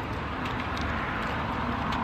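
Steady low outdoor background rumble, with a few faint light clicks as food is handled at a grill.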